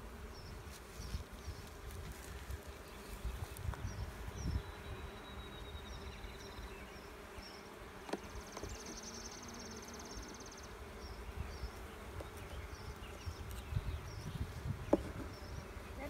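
Honey bees buzzing over an open hive in a steady hum, with irregular low rumbles beneath.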